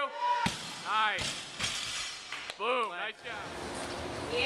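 An 80 kg barbell loaded with rubber bumper plates is dropped from overhead onto the floor. It lands with a heavy slam about half a second in and bounces once more, more softly, about a second in.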